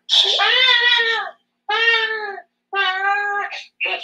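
A woman's voice holding three long, high, wordless notes, each under a second or so, with short breaks between. There is no accompaniment.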